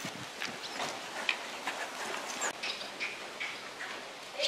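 Horses' hooves beating on the sand footing of a riding arena, an irregular run of hoofbeats.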